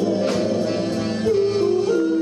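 Live soul band playing, with held chords over drums and a sharp drum hit about a third of a second in.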